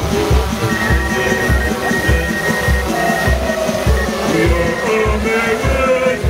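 Music with a steady bass beat, about two beats a second, under a melody.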